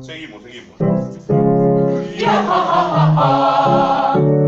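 A group of mostly women singers doing a vocal warm-up exercise together, singing held notes on vowels. It begins after a short lull about a second in.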